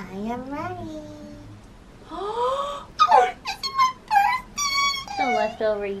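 Women's wordless high-pitched vocal sounds: a sliding 'ooh' with the pitch going up and down, then a rising call and a run of short, excited squeals, breaking into a laugh at the end.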